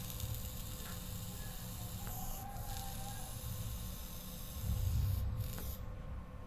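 A long, hard drag through a draw-activated e-cigarette, a faint steady airy hiss of breath being pulled in, followed by a louder breathy exhale of vapor about five seconds in. The auto switch needs a hard, sustained draw to fire.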